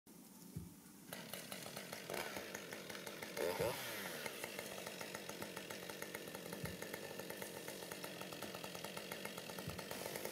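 Gasoline chainsaw running and cutting into a standing tree trunk for a felling cut. It comes in about a second in, fairly quiet and steady, with a brief louder swell about three and a half seconds in.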